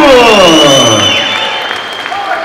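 The tail of a ring announcer's long, drawn-out call of a fighter's name, its pitch falling away over about a second, over a crowd applauding. A steady high tone sounds through it.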